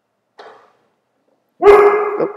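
A dog gives one loud bark near the end.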